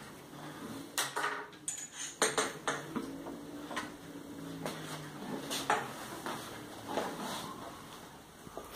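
Irregular light metallic clinks and knocks of hands working a bicycle's seatpost into the frame and handling its clamp.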